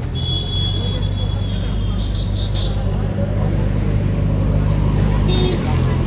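A motor vehicle's engine running steadily, a low even hum that holds through the whole stretch. A thin high tone sounds faintly over the first second and a half.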